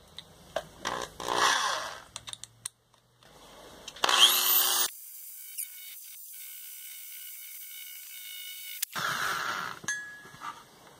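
Corded electric drill with a small wheel in its chuck, run in short bursts against the back of a silicon bronze casting. There is a burst about a second in, and the loudest comes a little after four seconds with a rising whine as it spins up. A thinner, steady run follows, then another burst near the end.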